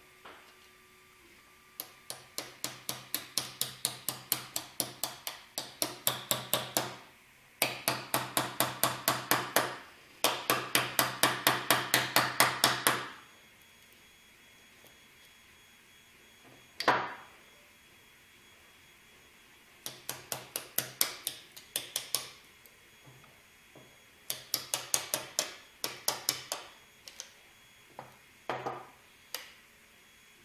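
A small wrench used as a hammer taps the back of a metal blade wedged under a 3D print to chip the print off the printer's build plate. The metal-on-metal taps ring and come in quick runs of about four a second, each run lasting a few seconds. There is a single harder knock about seventeen seconds in.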